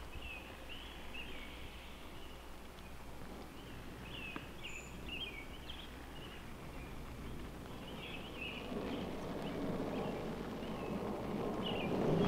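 Quiet woodland ambience with faint, scattered bird chirps, and a soft rushing noise that slowly grows louder over the last few seconds.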